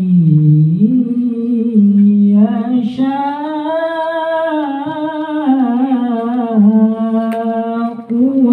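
A man's solo voice chanting an Islamic devotional recitation into a microphone, unaccompanied. He draws out long, gliding, ornamented notes, dipping low about half a second in and holding one long line through the middle.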